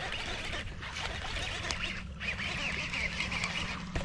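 Ducks calling, a rough run of repeated calls in two stretches with a short break about two seconds in, over a low steady hum.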